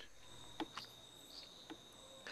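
Faint, steady high-pitched chirping of crickets, with a few soft ticks.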